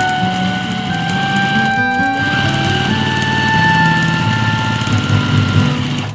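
Domestic electric sewing machine running at speed as it stitches a seam, its motor and needle making a fast, even whir that breaks off briefly about two seconds in. Background music with long held notes plays over it.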